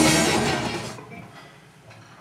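Rock band's electric guitars and drums ringing out on the last chord of a take, fading away over about a second into quiet room tone.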